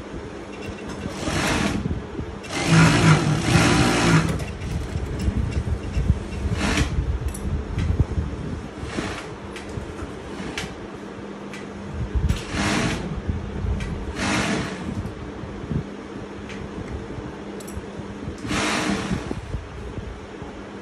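Industrial lockstitch sewing machine stitching in several short runs, the longest about two seconds near the start, with pauses between runs while the fabric strip is lined up. A steady low hum runs underneath.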